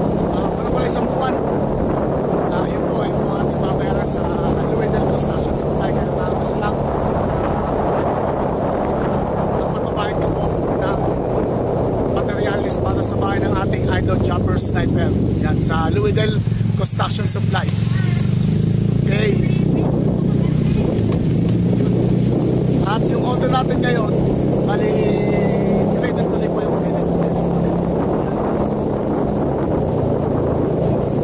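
A small motorcycle engine running at road speed, with wind buffeting the microphone; the engine note dips and picks up again about halfway through.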